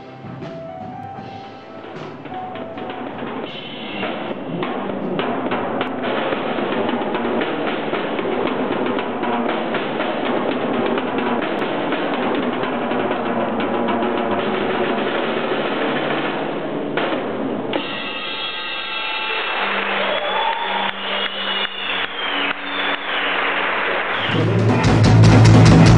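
Acoustic drum kit played live: a long run of fast rolls and fills on snare, toms and cymbals. Pitched instrument notes and steady accented beats join near the end. The recording sounds dull and low-fidelity.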